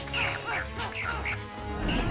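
Cartoon pogo-stick frog creatures making short, quack-like squawking calls, several a second, stopping about three-quarters of the way through, over film score music with a low beat.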